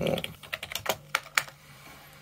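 Typing on a computer keyboard: a quick, irregular run of keystrokes that stops about a second and a half in.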